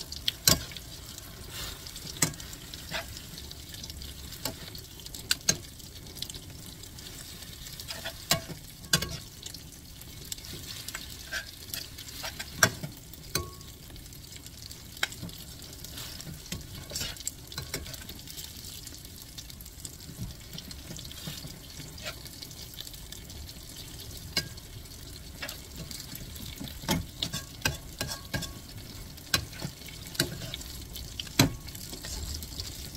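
Sweet potato stems sizzling as they are stir-fried in a wok, with frequent irregular clicks and scrapes of a metal slotted spatula and a silicone ladle against the pan.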